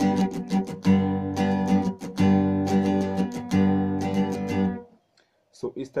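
Acoustic guitar strummed with a pick in a fast, even down-up pattern, its chords ringing and changing roughly every second and a half. It stops about five seconds in.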